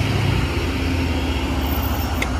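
A vehicle engine idling steadily, a low even rumble.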